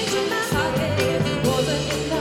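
Live band music with singing.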